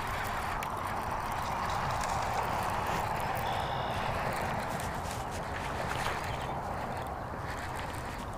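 Fishing reel being cranked steadily to bring in a small hooked bass, a continuous whirring retrieve with a few faint clicks.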